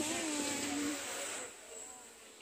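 People talking in the background, with one voice holding a note through the first second, over a steady noise that drops away about a second and a half in.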